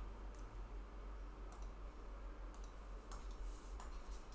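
A few faint, scattered clicks over a low steady hum: clicks of computer input as the on-screen pen annotations are undone.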